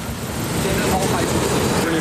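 Street traffic noise picked up by a phone's microphone, a steady rumble and hiss, with a man's voice speaking over it.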